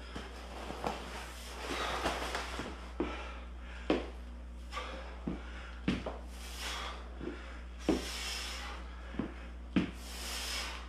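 Sandbag lunges: irregular thuds and knocks of feet and bag on a hard floor, roughly one a second, with rustling of the sandbag's fabric and hard breaths between them.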